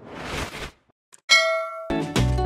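Logo-intro sound effects: a whoosh that swells up and stops, a short gap, then a bright metallic ding that rings for about half a second before cutting off.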